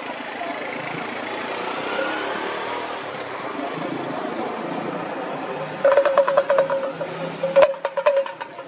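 Steady outdoor background noise with a distant engine and faint voices. About six seconds in, a rapid string of short, pitched, chattering calls starts, and a sharp click comes near the end.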